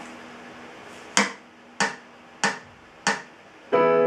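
Four sharp clicks, evenly spaced about two-thirds of a second apart, counting in the tempo. Near the end, a digital piano comes in with a sustained chord.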